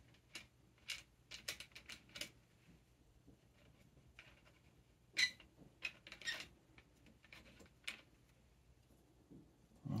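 Faint clicks and light scrapes of a metal camera adapter being screwed by hand onto the threaded end of a microphone boom arm: scattered small ticks, bunched in the first couple of seconds, with a sharper click about five seconds in.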